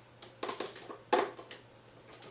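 Faint handling noise: a few short clicks and light scrapes, the sharpest just over a second in.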